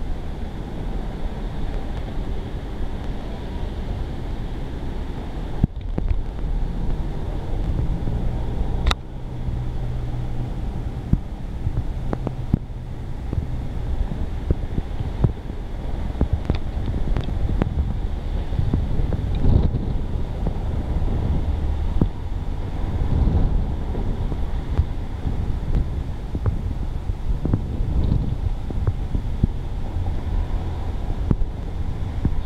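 Wind buffeting the microphone: a steady low rumble that swells in gusts, with a single sharp click about nine seconds in.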